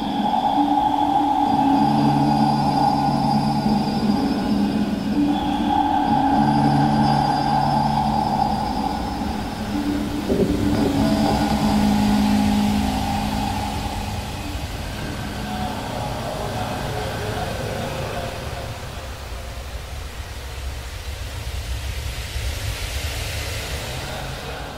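Layered, sustained drone tones in chord-like clusters that shift pitch every few seconds. After about 13 s they fade into a quieter, hissing wash of noise.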